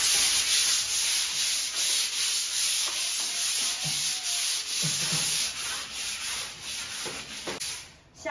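Hand sanding with sandpaper on a putty-skimmed plaster wall, two people scrubbing at once: a continuous scratchy rasp that swells and eases with each back-and-forth stroke and dies away just before the end. This is the wall's dried putty coat being smoothed before painting.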